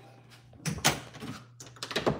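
Several brief, soft knocks and rustles, about one every half second, from a handheld phone being moved and handled, over a low steady hum.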